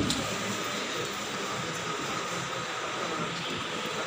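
Steady rushing background noise of a room, even throughout, with a faint steady whine in it and no voices standing out.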